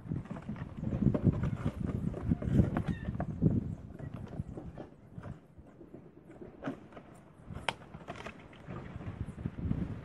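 Corrugated plastic nucleus hive box being folded together by hand: irregular knocks, thumps and rubbing as the panels and flaps are bent and pushed into place, heaviest in the first few seconds, then quieter with a few sharp clicks.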